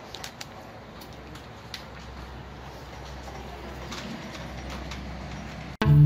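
Supermarket-entrance ambience: a steady low hum and general noise with scattered light clicks and knocks as shoppers and a shopping trolley move through the doorway. Music cuts in abruptly near the end.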